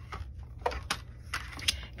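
A few light, separate clicks and taps as the clear plastic cutting plate is lifted off a die-cutting machine's plate sandwich and set down on the counter.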